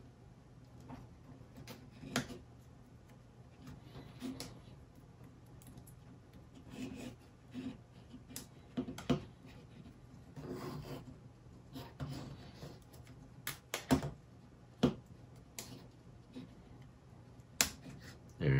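Small plywood parts of a wooden mechanical model kit being pressed and fitted together by hand: scattered light clicks and taps with soft rubbing of wood on wood, a few sharper clicks standing out.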